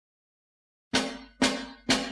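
The opening of a northern soul record: about a second of silence, then three sharp drum hits half a second apart, each ringing briefly and dying away, leading into the band.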